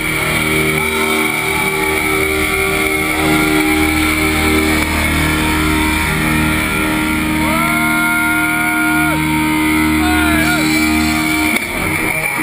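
Heavily distorted electric guitars and bass holding long, ringing notes through an arena PA, the pitch stepping to a new note every second or two, with crowd voices shouting over them. The sound cuts off sharply near the end.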